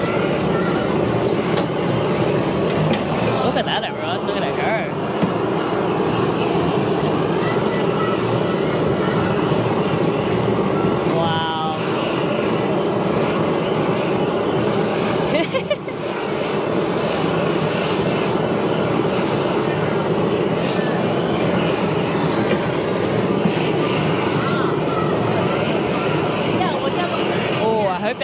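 Hose-fed gas blowtorch running steadily as it sears a roll on a flat griddle, over a constant background of crowd chatter and music.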